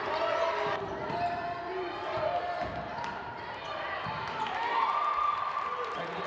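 Basketball bouncing on a hardwood court among the voices of players and crowd in the gym.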